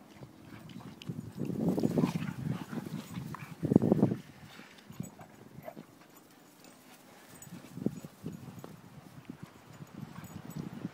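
Two pit bulls play-fighting in deep snow: two bursts of scuffling and bounding, the louder about four seconds in, then lighter scattered thuds of paws in the snow.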